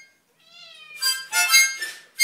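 A house cat gives one short meow that rises and falls in pitch about half a second in, a sign of its annoyance at the harmonica. Then a small harmonica is blown close by in three loud, short chord blasts.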